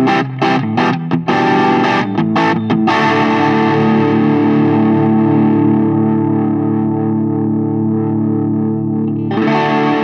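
PureSalem Tom Cat electric guitar played through the Diamond Pedals DRV-1 Drive overdrive into a Mesa/Boogie Mark V:25 amp. The overdriven tone plays a few short chopped chords, then one chord left to ring and slowly fade for about six seconds, and a new chord is struck near the end.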